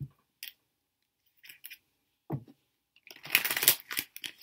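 Tarot cards being handled: a few short taps and rustles, then a quick run of rapid card-on-card crackling, like a shuffle, lasting about a second near the end.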